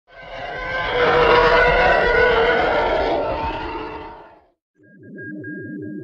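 Intro sound design: a loud, dense swell of layered sound that builds over the first second and fades out by about four seconds, then after a brief silence a rapidly warbling electronic tone starts, with a thin high steady tone above it.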